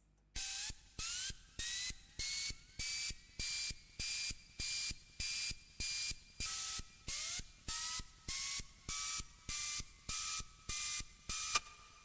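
Yamaha CS20M monophonic synthesizer playing a patch of rhythmic, evenly pulsing noise bursts, about one and a half a second, like hissing gusts. A thin whistling tone runs through the bursts and slides up from note to note, moving to a lower note about halfway through before climbing again.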